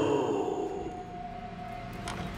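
The drawn-out tail of a creature-like voice sliding down in pitch, then a single held note of horror-trailer score that slowly fades.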